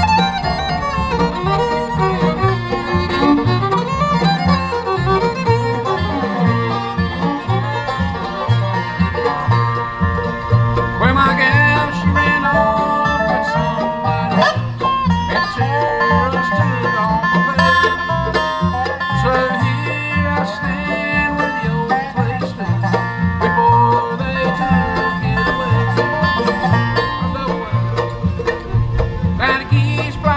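A live acoustic bluegrass band playing an instrumental break: fiddle, banjo, mandolin, resonator guitar and acoustic guitar over a steady plucked upright bass, at a lively tempo.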